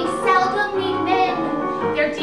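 A woman singing a musical-theatre song live, with piano accompaniment.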